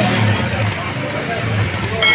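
Busy street-food shop din: indistinct voices over a steady low rumble, with a few light clicks.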